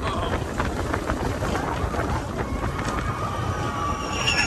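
Steel roller coaster train running along its track: a steady rumble of wheels with continual clattering, and a faint high whine in the second half.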